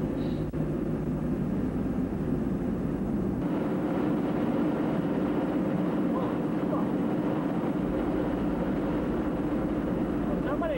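Car cabin noise while driving: a steady engine drone and tyre-on-road hiss. About three and a half seconds in it switches abruptly to a steadier, evener highway drone.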